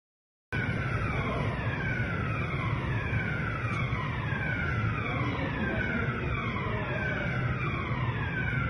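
An alarm sounding a falling tone that repeats about once a second, over a steady rumble of noise, starting about half a second in. It is heard in a metro station filled with smoke from a burning train car during the evacuation.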